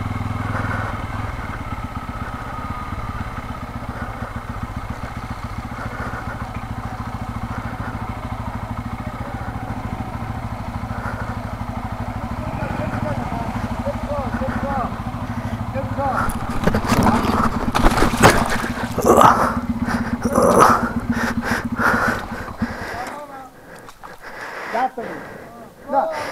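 Bajaj Pulsar N250's single-cylinder engine running at low speed. About two-thirds of the way in, a burst of knocks and scraping comes as the bike slips on algae-covered wet concrete and goes down. The engine stops soon after.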